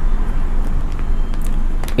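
Steady low background rumble, with a few faint clicks in the second half.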